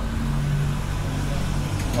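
A motor vehicle's engine running nearby: a steady low hum that lets up shortly before the end.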